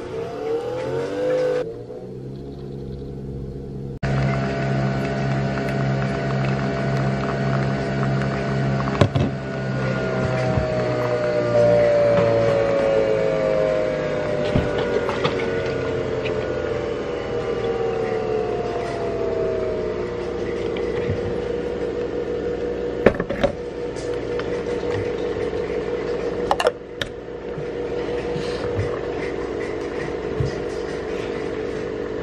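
Nespresso capsule coffee machine brewing. Its motor whir rises in pitch at the start, then settles into a steady hum whose tones glide slowly downward through the middle. Two sharp clicks come near the end.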